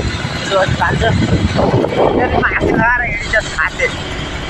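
Talking over steady motorbike riding noise, low engine and road rumble with wind rushing on the microphone.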